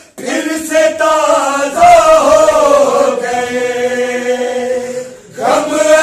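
A group of men singing a noha, a Shia mourning lament, in chorus without instruments: long held notes, with short breaks for breath at the start and about five seconds in.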